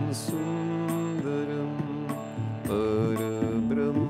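Harmonium playing a devotional hymn melody: reedy held notes that move in steps over a steady low drone.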